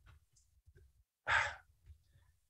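A man's single audible sigh, a short breathy exhalation about a second and a half in, in a pause between phrases; otherwise near silence.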